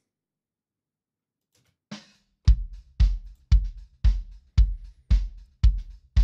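Kick drum group from a live drum recording, played back alone. After about two seconds of silence comes a steady beat of deep kick hits, about two a second, with the fundamental between 40 and 50 Hz.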